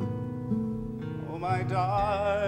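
Acoustic guitar picking notes, joined a little past halfway by a male voice singing a held note with vibrato.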